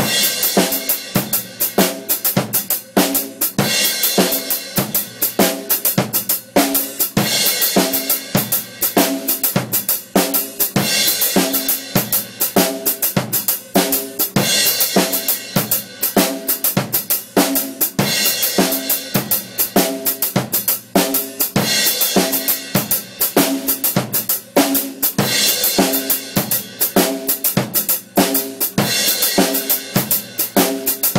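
Rock drum kit playing a beat in 6/4 time with bass drum, snare and a stepped hi-hat closed by the foot pedal. A crash cymbal is struck on the first beat of every bar, about every three and a half seconds.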